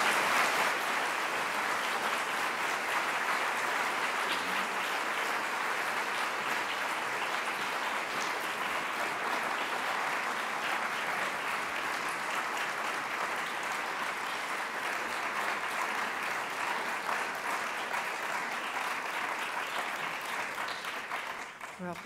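A large audience applauding steadily. It is strongest right at the start and tapers off a little near the end.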